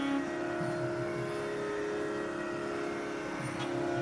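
Steady Carnatic sruti drone sounding the tonic and its overtones, with no melody over it. A louder held melodic note stops just after the start.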